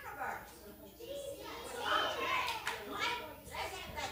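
Children's voices chattering indistinctly in a hall, with one voice louder about two seconds in.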